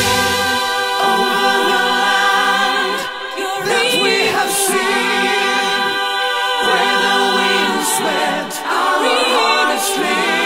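Symphonic metal song in a break of layered, choir-like vocals holding sustained chords, with the drums and bass dropped out. The sound thins briefly about three seconds in and again after eight seconds, and a wavering voice rises above the chords twice.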